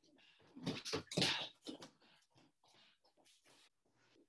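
Wrestling shoes shuffling and stepping quickly on a wrestling mat during a footwork warm-up drill, in short scuffs, with a louder flurry from about half a second to two seconds in.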